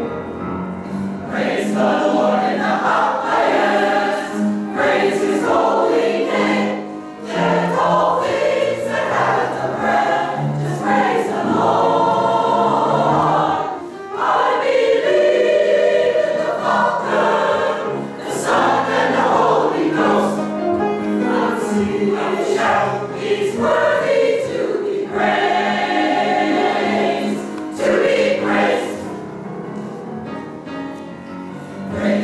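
Mixed choir of men and women singing a gospel anthem in sung phrases with short breaths between them.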